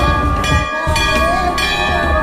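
Metal bells struck about three times, each stroke ringing on in many steady tones, over devotional music with a singing voice.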